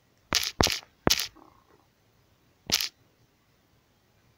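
Fingertip taps on a smartphone's on-screen keyboard while a word is typed. There are four sharp taps, three close together in the first second and one more about two and a half seconds later.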